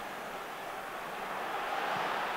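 Football stadium crowd noise from the match footage, a steady roar of thousands of spectators that swells gradually as the attack builds.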